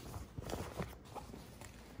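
Quiet rustling and brushing of cotton shorts fabric as hands turn it over, with a few small ticks.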